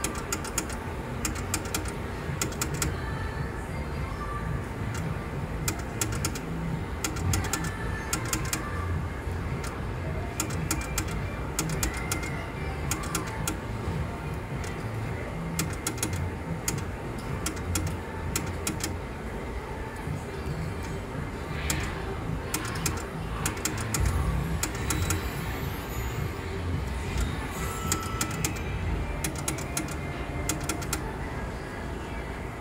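IGT Wild Sapphires slot machine playing spin after spin, with clusters of quick sharp clicks as the reels run and stop. Underneath is a steady casino din of voices and music.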